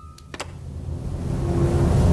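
A low rumbling swell that grows steadily louder, a dramatic build-up effect on a film soundtrack. A single sharp click comes about a third of a second in.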